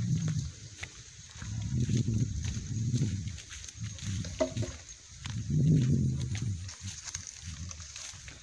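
Heavy breathing of a tired person walking, in two long, low swells.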